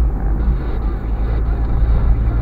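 A car driving slowly, heard from inside its cabin: a steady low drone of engine and tyres on the road.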